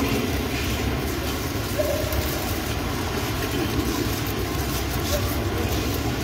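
Steady low rumbling room noise with no distinct events.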